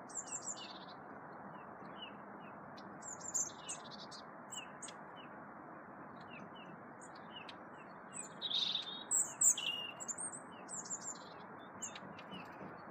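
Small garden birds, tits, calling: short chirps repeat all through, with clusters of thinner, higher calls that grow loudest towards the end, over a steady background hiss.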